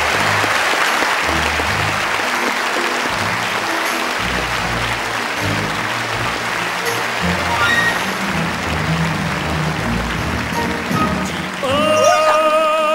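Audience applause over instrumental stage music. The applause is loudest at the start and slowly dies down while the music's bass notes carry on.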